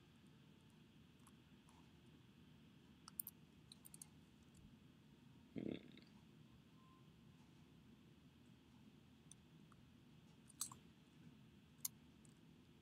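Near silence with a few scattered clicks of computer keys: a small cluster a little after three seconds, a soft thump just before six seconds, and two sharp clicks near the end.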